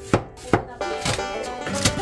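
Kitchen knife cutting a green onion on a plastic cutting board: three sharp knife strokes against the board, over background music.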